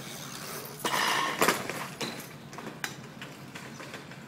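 A bicycle crashing onto the street: a loud clattering burst about a second in, followed by a few sharp metallic clicks and clinks, over outdoor street background noise.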